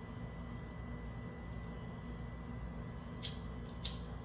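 A handheld lighter being flicked twice near the end: two short sharp clicks, over a steady low hum that the owner finds loud from the kitchen refrigerator.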